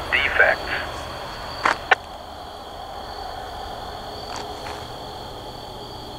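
A railroad defect detector's automated voice over a scanner radio ends about half a second in, followed by two short clicks near two seconds. A steady high-pitched insect drone and faint radio hiss carry on underneath.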